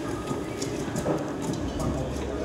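Stand mixer motor running, its beater churning ice cream mix in a steel bowl as it freezes in liquid nitrogen fog: a steady mechanical run with scattered light clicks.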